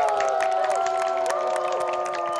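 Audience cheering, many voices at once, over the closing music of a K-pop stage performance.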